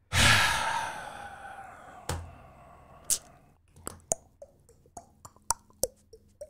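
A weird sound effect: a loud whoosh that starts suddenly and fades away over about two seconds, then two sharp knocks about a second apart, then a string of short, irregular pitched blips, two or three a second.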